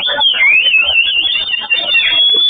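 A loud, high-pitched tone that dips and then wavers up and down, over a background of voices.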